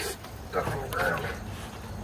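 St. Bernard puppy whining, two short whimpers about half a second and a second in.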